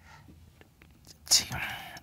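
A man's breathy whisper, one short burst about a second and a half in that trails off as a hiss. A few faint clicks come just before it.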